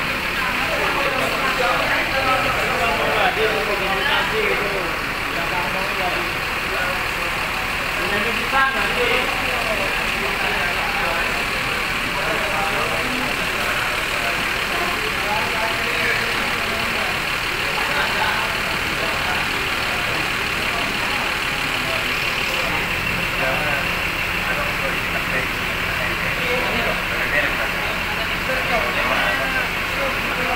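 Bus engine idling amid indistinct background voices, with a steadier low engine hum setting in about two-thirds of the way through.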